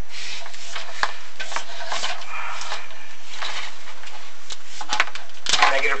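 Chimney inspection camera and its push rod scraping and rubbing irregularly against the creosote-coated brick walls of a fireplace flue as it is fed down the chimney, in uneven bursts for about three and a half seconds.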